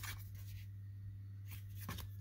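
Faint scrape of glossy Topps baseball cards sliding over one another as a stack is flipped through by hand, once near the start and again about a second and a half in, over a low steady hum.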